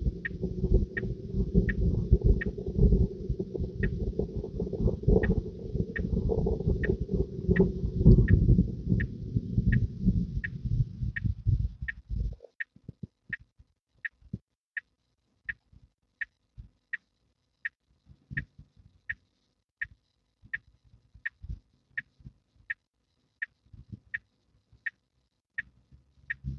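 Tesla Model 3 turn signal ticking steadily, about three ticks every two seconds. Under it, a loud low cabin rumble with a hiss above it cuts off suddenly about halfway through. After that the ticks go on alone, with a few faint knocks.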